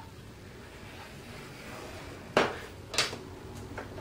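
Hands handling cardstock on a plastic scoring board: a faint rustle, then a sharp knock about two and a half seconds in and a lighter one about half a second later.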